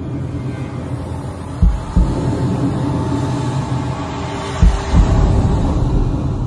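Dark, low droning rumble of a horror intro sound bed with faint held tones, broken twice by a pair of deep thumps, about a second and a half in and again near the end.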